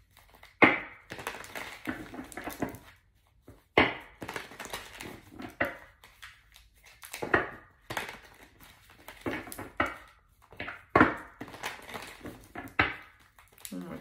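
A deck of tarot cards being shuffled by hand: repeated short rustles and slaps of the cards, with sharper snaps every few seconds.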